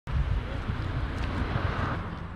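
Outdoor street ambience dominated by wind buffeting the microphone: an uneven low rumble under a steady hiss.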